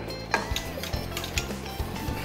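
Nutmeg being ground from a twist-top spice grinder over a pot, giving a run of irregular ratcheting clicks, with background music under it.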